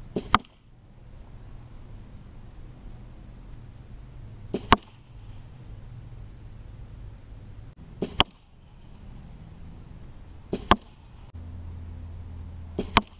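Crossbow shot four times, about every three to four seconds: each time a crack of the release is followed a fraction of a second later by a louder hit as the bolt, tipped with a fixed three-blade broadhead, strikes a block target.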